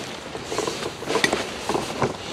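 Rustling of tent fabric with a few light clicks and knocks, from handling the yurt tent and its poles during setup.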